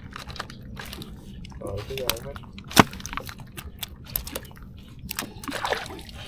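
Gloved hands working fish out of a nylon gill net: scattered small clicks, crackles and rustles of net mesh and fish being handled, with one sharp knock about three seconds in. A faint low steady hum runs underneath.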